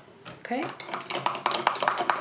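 Rapid light clinking, several clinks a second with a slight ring, starting about a second in, like a hard object knocking against glass or crockery.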